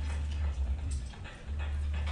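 Soundtrack of a short animated video played over the room's speakers: heavy low bass with a dip about one and a half seconds in, and short clicks and sound effects above it.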